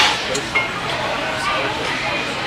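Glass bottles clinking as they are handled: a sharp clink at the start, another a moment later and a short ringing note just after, over background voices.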